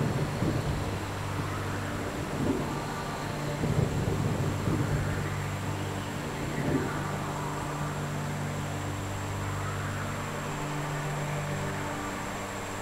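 A low, steady droning hum with deep rumbling swells every few seconds, and a faint steady high whine above it: dark ambient drone.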